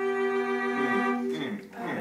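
Cello sounding a single long bowed note, held steady and then dying away about a second and a half in.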